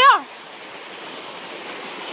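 Waterfall rushing steadily, an even hiss of falling water.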